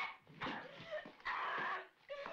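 A young woman's distressed, wordless crying: about three short wailing sobs in quick succession, the last one the longest.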